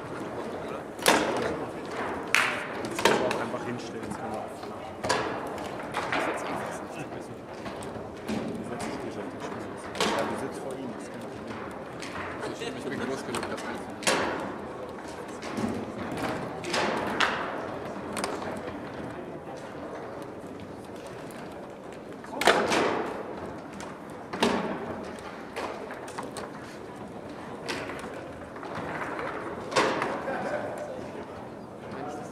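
Ullrich Sport foosball table in play: sharp, irregular knocks and clacks as the ball is struck by the rod figures and hits the table walls, with the rods banging now and then, about a dozen hard hits over a murmur of voices.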